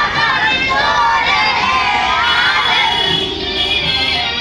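A group of children singing a prayer together, many young voices at once.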